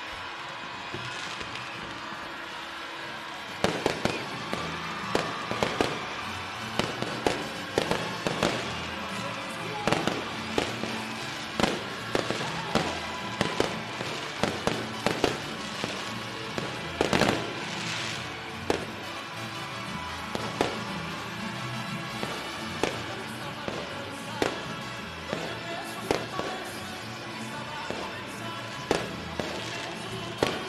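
Fireworks display going off: a rapid, irregular string of bangs and crackles that starts about three and a half seconds in and keeps going, over music playing in the background.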